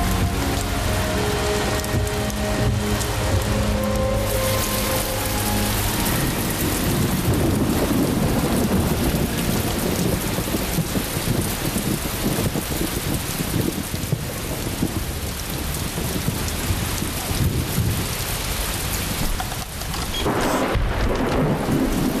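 Heavy rain falling, with thunder rumbling, heaviest from about six seconds in.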